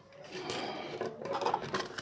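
Thin clear plastic of cut soda bottles rustling and rubbing as hands handle the pieces, with small clicks. It starts about a third of a second in.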